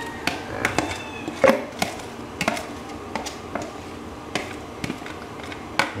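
Scattered light clicks and taps of a kitchen utensil against a pot and bowl as grated ginger is tipped into boiling water, at irregular intervals, over a steady low background.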